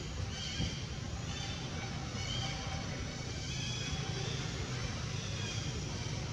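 Baby macaque giving repeated high-pitched distress cries, short squealing calls in a run about a second apart, over a steady low rumble.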